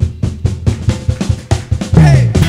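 Drum kit played on its own in a fill: quick, even strokes on the snare drum with the bass drum underneath, about seven a second, while the rest of the band drops out. The full band comes back in loudly right at the end.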